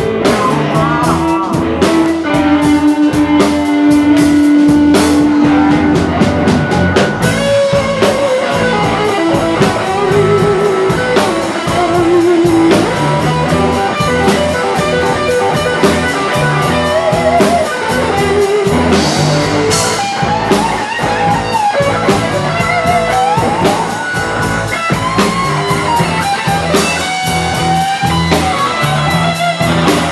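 Live rock band playing, with electric guitars over bass and a drum kit.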